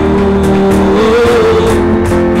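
Loud live worship band music: held chords with a lead line that slides up about a second in, between sung lines of the song.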